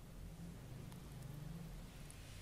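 Quiet room tone with a faint low hum in the middle.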